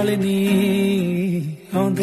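A Punjabi song: a singer holds one long note over the backing music. Near the end the note slides down and breaks off briefly before the next line comes in.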